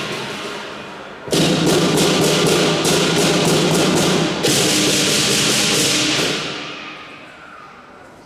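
Southern lion dance percussion (drum, gong and cymbals) playing: a loud crash about a second in, quick cymbal strokes about four a second, then a second big crash a few seconds in whose ringing dies away near the end.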